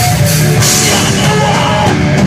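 Live rock band playing loud, with a full drum kit and electric guitars.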